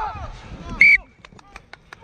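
One short, sharp blast of a referee's whistle stopping play for a knock-on at the pickup from a scrum, followed by a run of faint footstep knocks on grass.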